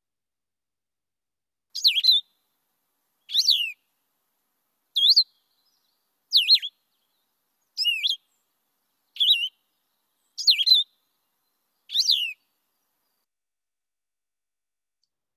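Blue-headed vireo song: eight short, slurred, very whistly phrases, each under half a second, given slowly with about a second and a half of silence between them.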